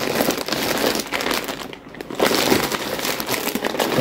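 Plastic packaging crinkling and rustling as a plush toy in a clear plastic bag is pulled out of a plastic mailer bag, almost continuous with a brief lull about halfway.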